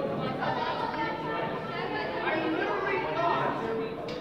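Indistinct chatter of many people talking at once in a large auditorium, with no single voice clear.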